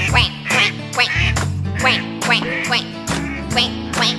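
Children's nursery-rhyme song over bouncy backing music, with a string of duck-like 'quack quack quack' calls repeated several times.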